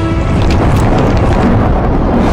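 Dramatic film soundtrack: a held musical note stops just after the start and gives way to a loud, low, noisy rumble, a sound effect under the score.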